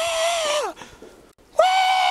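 A man's loud Tarzan-style jungle yell: two long, high, held cries, the first falling away under a second in and the second starting about a second and a half in.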